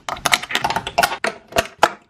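Metal clip of a webbing lifting harness clicking and clinking against a stainless steel pad eye as it is hooked on: a quick, irregular string of sharp clicks, one of the sharpest near the end.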